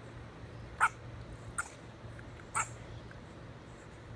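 Honey badgers snorting as they fight: three short, sharp calls about a second apart, over a steady low hum.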